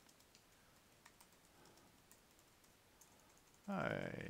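Faint, irregular key clicks of typing on a computer keyboard.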